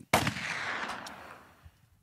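A single gunshot sound effect, played to match a finger-gun "bang": one sudden loud shot with a long reverberating tail that fades away over about a second and a half.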